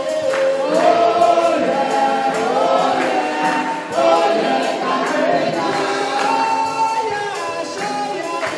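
Gospel praise singing: a woman leading a song on a handheld microphone, with other voices singing along and a tambourine keeping a steady beat.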